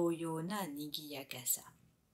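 Speech only: a woman reading aloud in Japanese, trailing off near the end.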